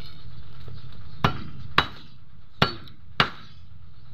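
Four sharp clinks of a thin metal rod striking stones as it is jabbed among rocks into a hole, coming in two pairs about half a second apart.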